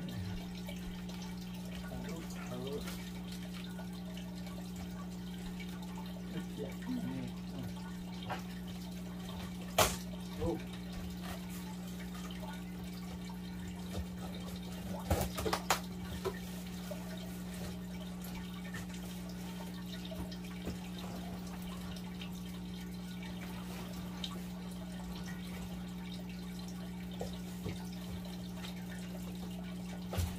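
A steady low hum, with a few sharp clicks and scrapes of a cardboard box being handled and cut open with a knife. The sharpest click comes about ten seconds in, and a small cluster follows around fifteen to sixteen seconds in.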